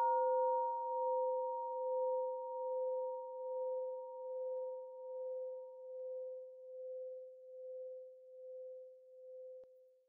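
Buddhist meditation bell, struck once just before, ringing out in one steady tone that pulses in a slow waver and fades away over about nine seconds, marking the close of a meditation period.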